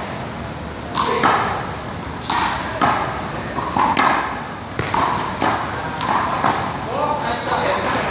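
One-wall handball rally: a small rubber ball is slapped by hand and hits the wall and court in a string of sharp smacks, several in quick succession, with voices in the background.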